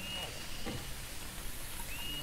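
Steady outdoor hiss, with a short high chirp at the start and again near the end, about two seconds apart. Faint knocks of dry sticks being laid on a fire pit.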